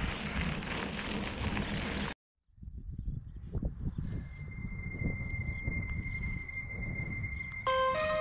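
Wind rumbling on an outdoor camera microphone, cut off suddenly after about two seconds; after a brief silence the rumble returns under a few high steady tones of an intro music track, and the music comes in fully near the end.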